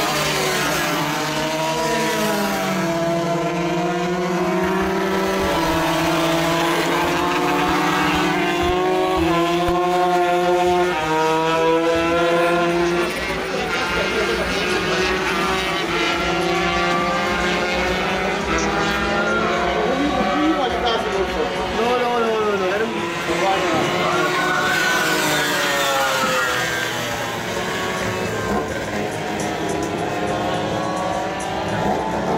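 125cc racing motorcycle engines revving hard, their pitch climbing and dropping again and again through gear changes as the bikes run along the circuit.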